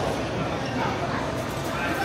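Indistinct chatter of people in a busy food hall, with a couple of short, high yips over it about a second in.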